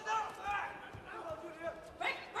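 Voices shouting around a kickboxing ring in short bursts, with a few dull low thumps from the fighters' punching exchange.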